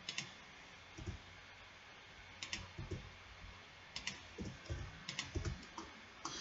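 Faint, scattered computer keyboard key presses and clicks, one at a time, coming closer together toward the end.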